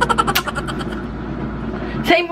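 A motor vehicle's engine sounds in the background: a quick run of rapid pulses that fades after about half a second into a steady rumble.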